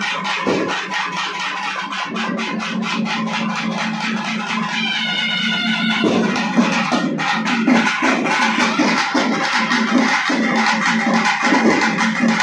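Tamil temple festival drum band (kodai melam) playing a fast, driving rhythm over a steady droning tone. The low beat grows heavier about halfway through.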